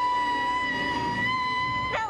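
A single high note, slid up into just before and then held steady at one pitch for about two seconds, stopping suddenly at the end.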